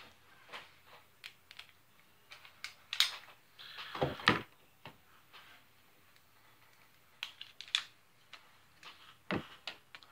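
Hard plastic toy lightsaber parts clicking and knocking as they are handled and twisted together: irregular light clicks, with louder clatters about three and four seconds in.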